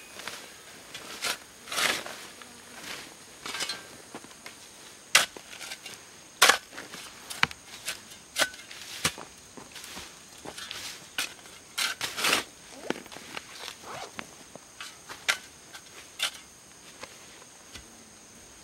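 Long-handled shovel digging into soil that is half stone: irregular crunching scrapes and knocks of the blade, with a few sharper strikes.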